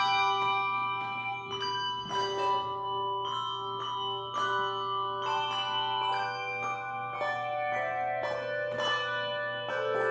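Handbell choir playing a slow tune on brass handbells: notes struck one after another, each ringing on and overlapping the next.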